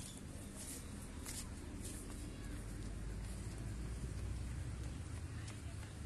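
Open-air ambience of a sports ground: a low rumble of wind on the microphone that swells in the middle, with faint distant voices and a few light clicks.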